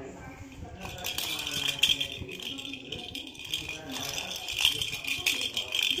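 A hollow plastic pet ball toy with a rattle inside, shaken by hand: a fast continuous rattling that starts about a second in.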